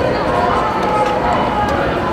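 Marchers' voices with long held, sung notes, over outdoor street noise.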